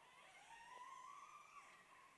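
Near silence: room tone, with a faint thin tone that rises slightly in pitch during the first second.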